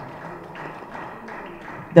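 A pause in amplified speech: low hall noise with faint background voices. Near the end a woman's voice resumes through the microphone and PA.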